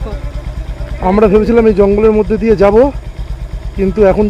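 Motorcycle engine idling steadily, a low, even pulse.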